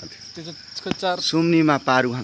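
A steady, high-pitched insect chorus runs throughout. A person starts talking over it in the second half, and a single click comes just before that.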